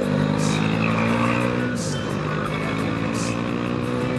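Motorcycle engine running under way on a winding road, heard from the rider's camera over wind noise; its pitch drops about two seconds in and then holds steady.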